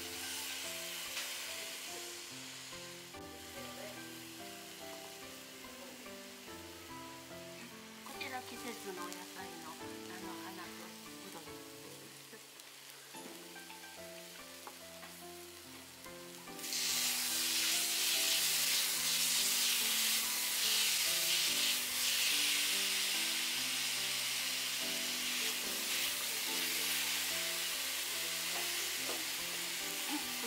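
Ingredients sizzling in the hot fat of a sukiyaki pan as onion, greens and shirataki noodles are laid in with chopsticks. The sizzle grows much louder a little past halfway and stays loud.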